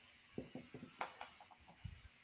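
A few faint clicks and light knocks from salt and pepper shakers being handled and lowered to the table, irregularly spaced, the sharpest about halfway through.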